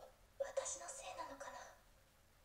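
A woman's voice speaking a short line quietly in Japanese: anime dialogue playing back, with the low end thinned out.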